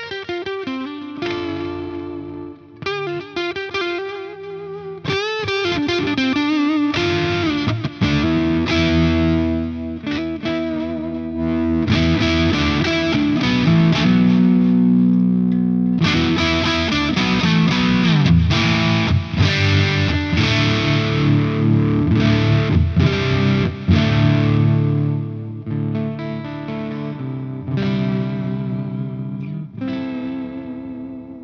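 Electric guitar, a Harley Benton Jazzmaster kit with single-coil pickups, played through an amp in short demo passages. A lighter passage with wavering pitch gives way, about seven seconds in, to louder, distorted chords and riffs, which ring out near the end.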